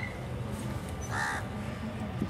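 A single short bird call sounds a little past a second in, over a low steady background hum.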